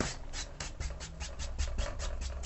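Wide flat brush swept quickly back and forth over wet oil paint on canvas, blending out the brush strokes: a rapid run of soft scratchy strokes, about six a second.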